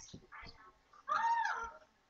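A voice making a drawn-out whining sound that rises and then falls in pitch, about a second in, after a few short faint sounds.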